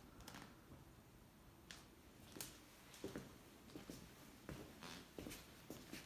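Near silence: quiet room tone with a few faint, scattered clicks and rustles.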